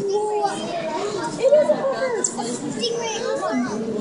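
Many children's voices chattering and calling out at once, overlapping in a crowd, with one louder call about a second and a half in.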